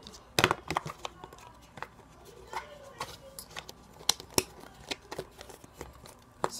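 Slime being packed into a plastic tub and the lid pressed on: irregular sticky pops and plastic clicks, the sharpest about half a second in and around four seconds in.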